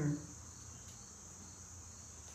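Crickets trilling steadily in a continuous, even, high-pitched chorus.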